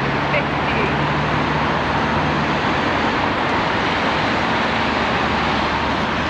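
Steady road traffic noise, with a low engine hum that fades out about halfway through.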